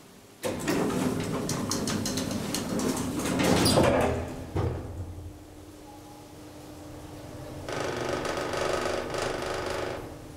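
Deve-Schindler D-series roped-hydraulic elevator: the car doors slide shut with clattering and clicks for about four seconds. A steady low hum from the hydraulic drive then sets in as the car starts to move, and a louder rushing noise joins it for the last two seconds.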